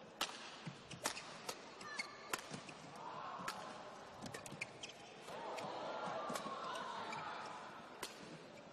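Badminton rally: rackets striking the shuttlecock in a series of sharp hits, with players' shoes squeaking on the court mat.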